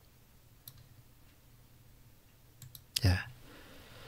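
A few faint, sharp clicks at a computer in a quiet room, then a man says a short '예' about three seconds in.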